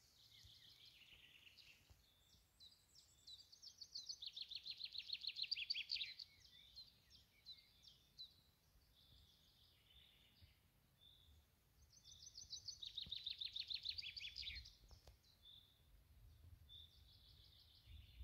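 Songbirds singing: two louder phrases of rapidly repeated notes, each about three seconds long, one about four seconds in and one near thirteen seconds, with quieter chirps between them.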